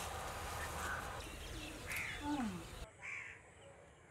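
Crows cawing a few times, short calls that fall in pitch, over a low steady outdoor background, which drops away briefly near the end.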